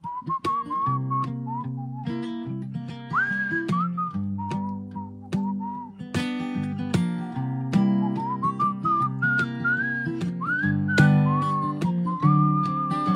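A man whistling a melody with slides between notes, over strummed acoustic guitar chords.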